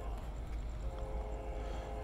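Distant approaching freight train: a low steady rumble, with the locomotive's horn sounding faintly as a steady chord from about a second in.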